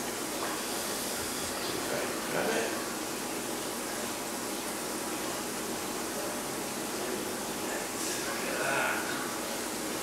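Steady rush of running water in a garden koi pond, with two faint murmurs of a man's voice, about two and a half and eight and a half seconds in.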